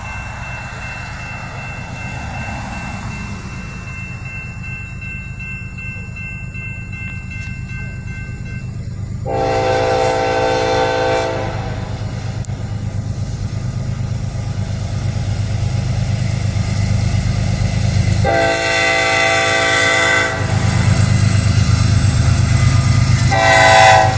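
A Nathan K5LLA five-chime air horn on a Norfolk Southern freight locomotive sounds two long blasts, about nine and eighteen seconds in, and starts a third near the end: the grade-crossing signal. Before the horn, a crossing bell rings steadily, and the rumble of the approaching diesels grows louder throughout.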